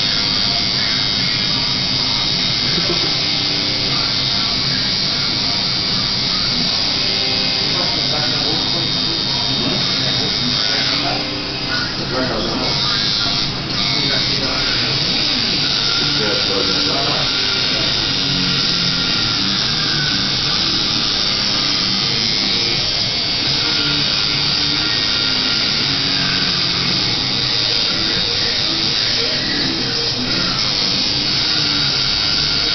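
Tattoo machine buzzing steadily as the needle works into skin, with background music and indistinct voices underneath; the buzz briefly drops away twice near the middle.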